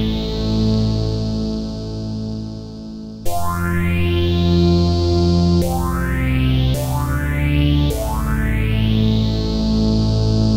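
Analogue synthesizer notes through an AJH Synth Next Phase analogue phaser set to extreme settings, its frequency driven by an envelope. A held note fades slightly, then new notes come about three seconds in and roughly every second after, each opening with a rising phaser sweep.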